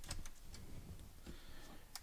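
Faint clicks and ticks of plastic as a pry pick works in the seam of an Acer Nitro 5 laptop's plastic bottom cover to separate it: a couple near the start and one near the end.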